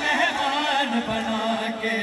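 Men chanting a noha, a Shia lament, in a slow melodic line, settling into one long held note about a second in. Low dull thumps come about once a second, fitting the crowd's chest-beating (matam).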